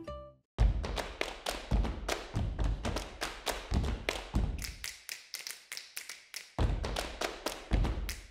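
Percussive jingle music: a steady beat of low thumping hits, about two a second, with sharp taps between them. It starts after a brief silence, thins out for about a second and a half a little past midway, then comes back.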